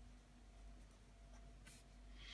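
Pen writing on squared paper: faint scratching of the strokes, with a couple of short, slightly clearer scratches near the end.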